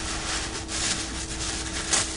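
Tissue paper and a paper gift bag rustling and crinkling as a gift is unwrapped by hand, in a series of uneven crinkles close to a microphone.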